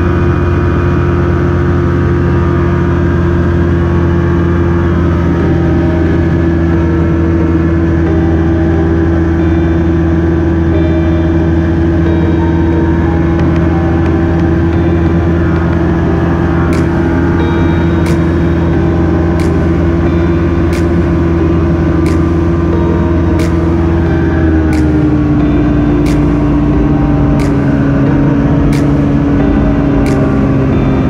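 Light aircraft engine and propeller running steadily at cruise power, heard from inside the cockpit. About 25 seconds in, the engine note steps down slightly to a lower pitch.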